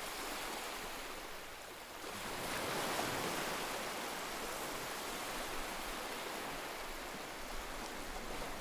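Heavy Atlantic surf breaking on a rocky shore: a steady rushing wash that swells about two and a half seconds in. The seas are rough from windy, stormy weather.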